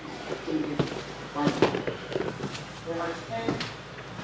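Indistinct speech, with a few sharp knocks and clicks in between.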